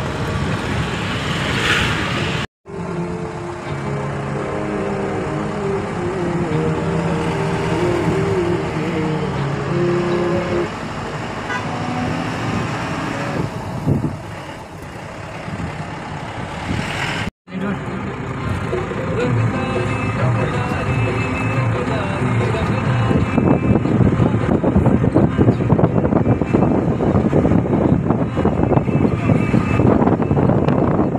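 Vehicle engine and road noise heard from inside a moving vehicle, broken twice by abrupt cuts. The noise grows louder and rougher in the last several seconds, with wind on the microphone.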